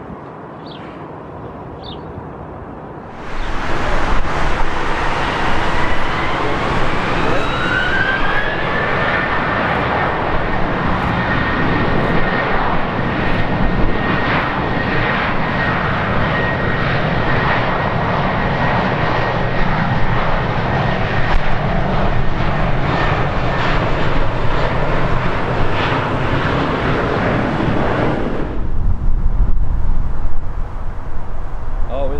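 Jet airliner engines: a loud roar starts suddenly a few seconds in, with a whine that rises in pitch and then holds steady as the engines spool up. It runs for over twenty seconds and cuts off near the end. Before it, a quieter stretch with a few short high chirps.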